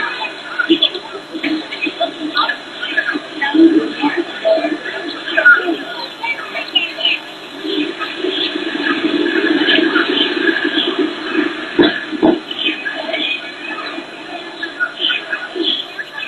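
Indistinct voices of several people chattering, with two sharp knocks close together about twelve seconds in.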